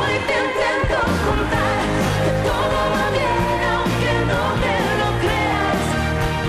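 A pop song: a woman sings lead with held, gliding notes over a full band with a steady bass line.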